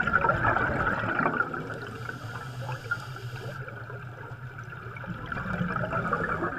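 Underwater bubbling: a steady stream of bubbles rising, over a low steady rumble.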